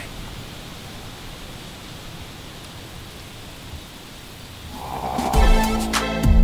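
Steady rushing of strong wind through the trees, then music with a beat comes in near the end.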